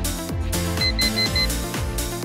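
Electronic workout music with a steady beat, and about a second in four quick high beeps from an interval timer, signalling the end of the exercise interval.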